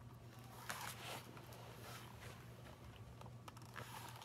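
Faint rustling and light clicks of a hardcover picture book being handled and repositioned, over a low steady room hum.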